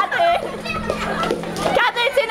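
Music playing for a game of musical chairs, with a group of children and teenagers shouting, laughing and talking loudly over it.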